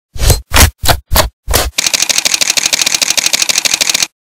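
Intro sound effect of a camera: five short, heavy hits, then a fast run of shutter-like clicks, about a dozen a second, that cuts off suddenly.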